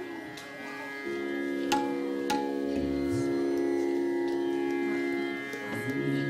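A steady drone of several held tones that swells in about a second in, with two sharp tabla strokes just under and just over two seconds in.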